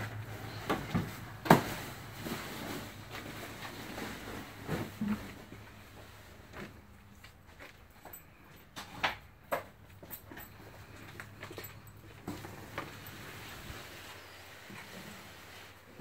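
A large fabric trailer cover being unrolled and dragged over a car, with rustling, swishing and scattered soft knocks. The sharpest knock comes about one and a half seconds in.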